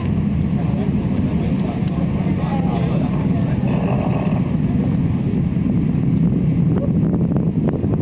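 Distant Space Shuttle launch roar from Discovery's twin solid rocket boosters and three main engines: a steady, deep rumble with scattered sharp crackles.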